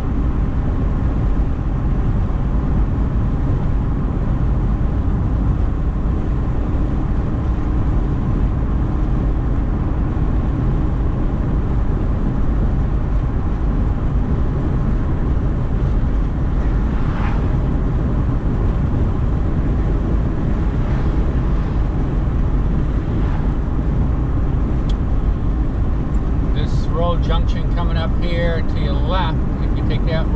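Car driving at road speed, heard from inside the cabin: a steady low rumble of tyres on the road and engine that does not change. A voice comes in near the end.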